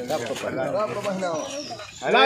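Several men's voices talking in the background, softer than the speech either side, with a faint thin high falling whistle near the end.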